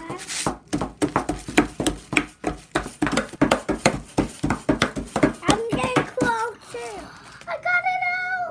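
A flat screwdriver chipping and scraping at a plaster dig block, making many rapid, irregular clicks and knocks for most of the time, with a child's voice briefly near the end.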